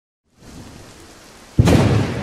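Thunderstorm sound effect: soft rain comes in, then a sudden loud thunderclap about one and a half seconds in that stays loud.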